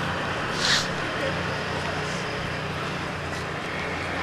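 Outdoor street background: a steady low hum under an even noise, with faint indistinct voices and a brief hiss about three-quarters of a second in.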